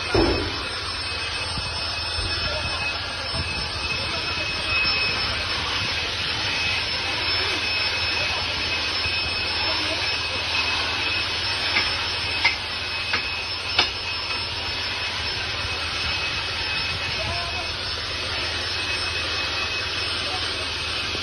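Fire hose nozzle spraying water in a steady, loud hiss, with a thump at the start and a few sharp knocks around the middle.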